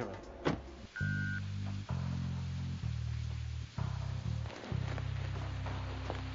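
Low, dark background music of sustained bass notes that change roughly every second, entering about a second in after a single thump.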